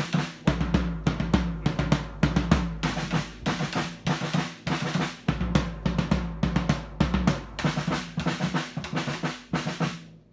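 Two drummers playing drum kits together: fast, busy strokes on snare and toms over a bass drum, with cymbals. The playing stops at the very end and the ring dies away.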